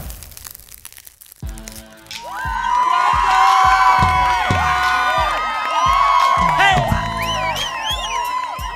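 A live band starts a song about one and a half seconds in: deep bass hits under held and bending melody lines.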